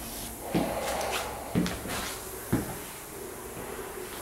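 Three dull thumps about a second apart, with rustling between them.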